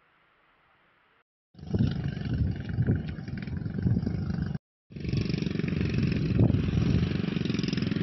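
Motorcycle engine running close to the microphone. It starts abruptly after about a second of near silence, cuts off briefly near the middle, then resumes and runs steadily.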